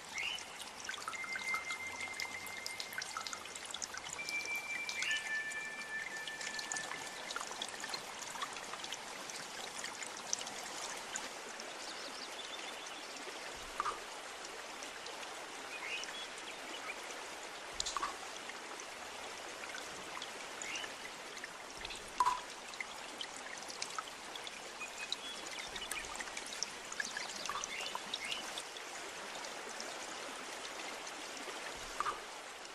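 Nature-sound interlude of steadily trickling, flowing water, with scattered short high chirps and a few held whistled notes during the first several seconds.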